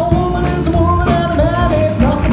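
Live big band playing, with a vocalist singing held notes over the horns and rhythm section.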